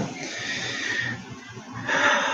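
A man's long, breathy exhale close to the laptop microphone, lasting about a second, with a second breathy rush near the end.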